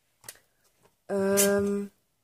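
A woman's voice holding one level-pitched hesitation sound, like a drawn-out "ähm", for under a second, starting about a second in after a faint click.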